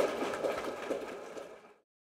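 Audience applauding, fading out to silence shortly before the end.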